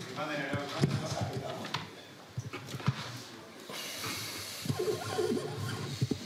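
Indistinct voices talking away from the microphones in a press room, with a few scattered clicks and rustles.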